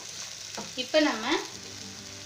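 Sago pearls and chana dal sizzling in oil in a frying pan, stirred with a wooden spatula: a steady frying hiss. A short voice-like sound comes about a second in.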